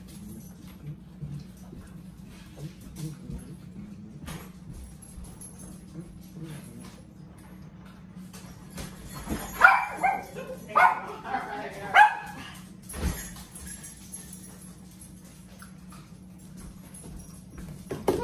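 A dog giving about four short, loud barks in quick succession around the middle, over a low steady hum.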